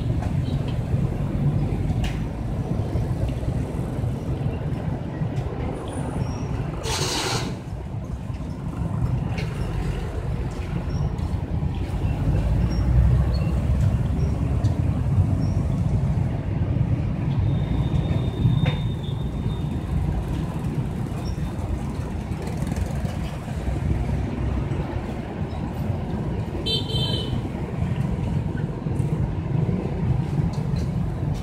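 Steady low rumble of street traffic going by, with a short vehicle horn toot near the end.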